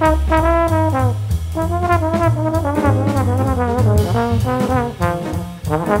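Jazz trombone playing a moving melodic line over a small band's rhythm section, with walking low notes and cymbal and drum strokes underneath. The trombone line breaks off briefly near the end before picking up again.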